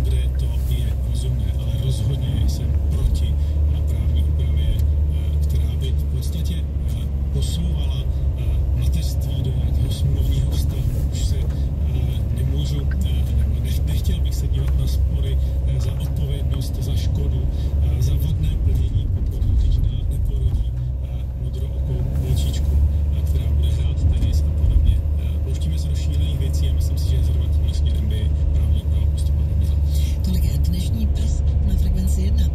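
A car driving slowly along a narrow lane, with a steady low rumble of engine and tyres and scattered small clicks and knocks.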